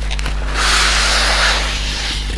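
Packaging of a newly bought waffle maker being handled as it is unboxed: a hissing rustle of about a second, starting about half a second in, over a steady low hum.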